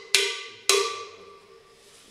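Cowbell struck twice, about half a second apart, in a slow rhythm pattern. The second stroke rings out and fades over about a second.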